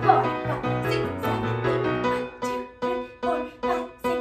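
Recorded dance music with a steady beat, about two beats a second.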